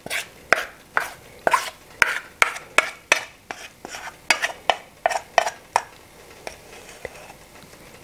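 A spatula scraping thick spaetzle batter out of a bowl, in quick strokes about two or three a second, tapering off after about six seconds.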